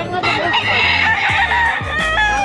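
A gamefowl rooster crowing: one long crow of about a second and a half, starting just after the beginning and falling in pitch at its end.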